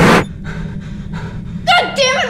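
A loud whooshing noise burst cuts off just after the start. A woman then pants in short, rapid breaths, about four a second, in fright. Near the end a loud voiced cry breaks out.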